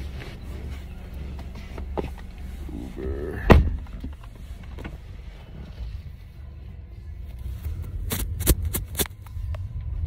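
Low, steady rumble of a moving car heard from inside the cabin, with music playing. There is a single loud thump about three and a half seconds in and a few sharp clicks near the end.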